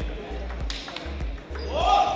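Table tennis ball clicking against paddles and the table during a rally, over background music with a repeating bass beat. A voice calls out near the end.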